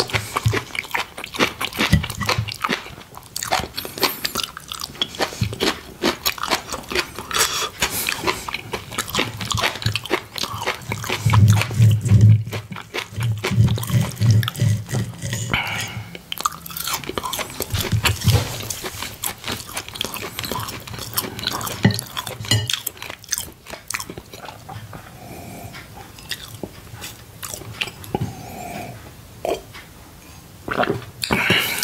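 Close-miked chewing and biting of food: steady crisp crunching and wet mouth clicks, with a stretch of deeper thuds around the middle.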